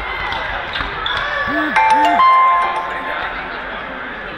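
Indoor football match in an echoing sports hall: voices calling out, a ball bouncing and being kicked on the hall floor, and a brief high tone about two seconds in.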